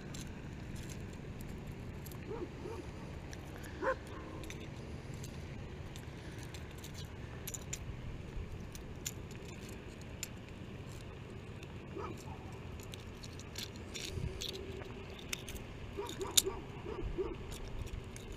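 Fishing pliers and a crankbait's hooks clicking and rattling in the mouth of a caught bass as the lure is worked free: scattered light metallic clicks over steady background.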